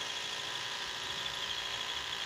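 A steady mechanical hum with a faint high whine, even in level throughout.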